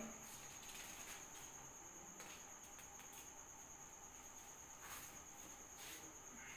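Near silence: room tone with a faint, steady high-pitched tone running throughout.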